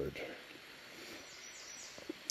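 Faint outdoor background hiss, with a few short, high bird chirps well in the background about a second and a half in.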